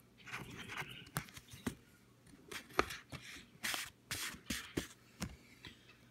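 Scratch-off lottery ticket being scratched: a series of short, irregular scrapes and clicks on the card's coating, some louder strokes in the middle.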